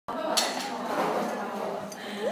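A single sharp clink about half a second in, metal tongs knocking against a glass measuring cylinder, over a murmur of voices in the room.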